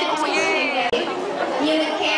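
Speech: a woman talking with chatter around her; the sound cuts out for an instant about halfway through.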